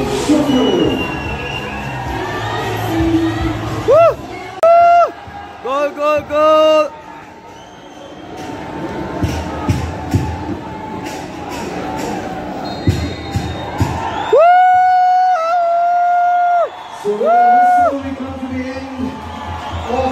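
Football stadium crowd noise and cheering under the floodlights, cut through by loud blown tones: a run of short toots, then a long held blast and one shorter one near the end.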